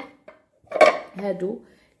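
Metal saucepans clanking as they are handled, with one sharp clatter a little under a second in.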